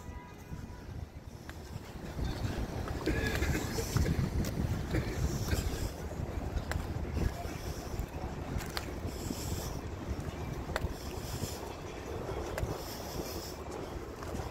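Wind buffeting a phone microphone over outdoor city street noise, rising and falling in gusts, with scattered faint clicks.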